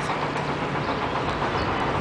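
Steady outdoor background noise, an even hiss and rumble with a faint low hum that fades about two-thirds of the way through.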